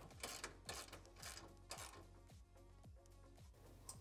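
Faint ratchet wrench turning a 3/4-inch socket on a hitch-pin bolt: a handful of quiet ratcheting strokes in the first couple of seconds, fading away toward the end.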